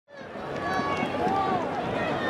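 Several people's voices talking and calling out over one another, fading in from silence at the start.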